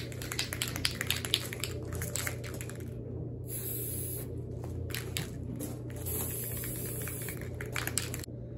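Aerosol can of black RC car paint being shaken, its mixing ball rattling, with two hissing spray bursts, one about three and a half seconds in and one near the end.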